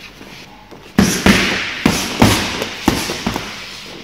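Boxing gloves punching focus mitts held by a coach: about six sharp smacks in quick succession, starting about a second in, as the boxer throws right-left-right combinations on the pads.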